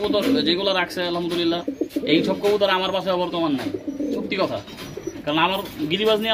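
Domestic pigeons cooing, with coos following one another almost without a break.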